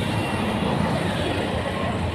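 Busy street ambience: a steady low rumble of vehicle engines with scattered voices of passers-by.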